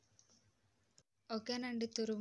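Faint scraping and light clicks of a bar of soap rubbed over a stainless-steel hand grater. After a short break, a woman begins speaking about a second and a half in.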